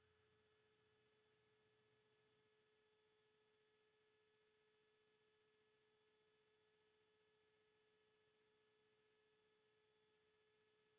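Near silence, with only a very faint steady tone underneath.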